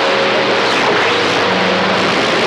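Radio static hissing steadily from a Ranger RCI-2995DX CB radio's speaker between transmissions, with faint steady tones underneath.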